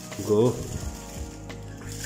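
Plastic packaging crinkling and a cardboard box rustling as wrapped parts are pulled out by hand.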